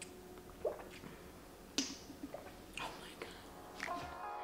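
A few faint, scattered mouth sounds from sipping an iced drink through a straw, breaths and lip noises with one sharp little click near the middle, over quiet room tone.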